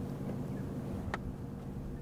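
Steady low hum of a vehicle engine idling, with a single short click about a second in.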